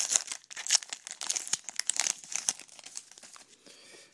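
A baseball card pack's crimped wrapper being torn open and crinkled by hand: a quick run of sharp crackles that thins out and quiets near the end.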